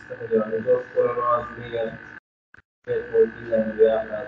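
A person talking over a video-call audio link, with a steady high-pitched hum underneath. The audio cuts out completely for about half a second just past the middle.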